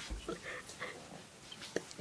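Faint stifled laughter and breathy whimpering from a young woman, with a soft bump just after the start and a short knock near the end.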